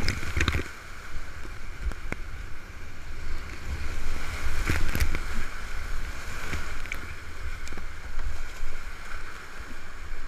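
Whitewater rushing around a kayak in a river rapid, heard close up with low rumbling buffeting. Several sharp splashes cut in, the strongest about five seconds in.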